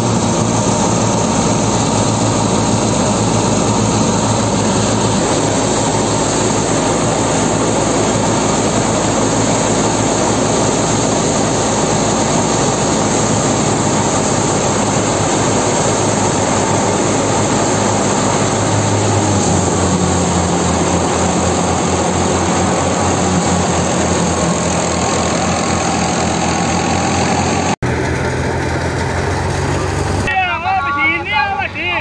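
New Holland Fiat 480 diesel tractor running under steady load, driving a wheat thresher through its PTO, with the thresher drum and fan churning as wheat straw is fed in. The engine's low tone shifts about two-thirds of the way through, and the sound breaks off for an instant near the end.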